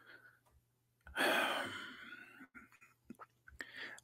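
A man's breathy sigh into the microphone about a second in, fading out over most of a second, followed by a few faint clicks and a short breath near the end.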